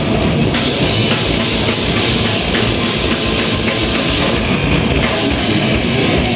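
A live heavy rock band playing loud and without a break: electric guitars over a drum kit.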